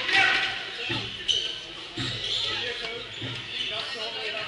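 Dull thuds on the wooden floor of a squash court, about once a second, with voices in the hall.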